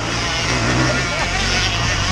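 Steady drone of enduro motorcycle engines running during the race, holding an even level.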